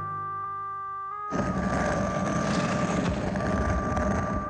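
Cartoon soundtrack: a held electronic chord, then a little over a second in a dense, fluttering noise effect starts suddenly and carries on under a sustained high tone.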